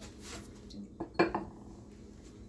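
A glass bowl of water knocking and clinking as it is set down on a hard countertop, with a few sharp knocks about a second in.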